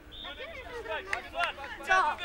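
Several children's voices talking and calling out over one another, with a short high call just after the start and someone asking "Co? Co?" near the end.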